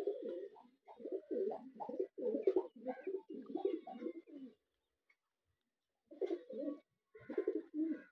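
Domestic pigeons cooing: a run of low, warbling coos for the first four and a half seconds, a pause, then two shorter bouts of cooing near the end.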